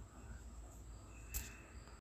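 Faint soft rustling of dry poha flakes being stirred with a silicone spatula in a nonstick pan, with a small tick about one and a half seconds in.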